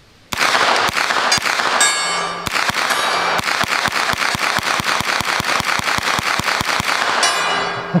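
SIG MPX 9mm pistol-caliber carbine fired rapidly in semi-auto, about five shots a second for some seven seconds, at a steel gong. The gong rings between shots and rings on for a moment after the last shot near the end.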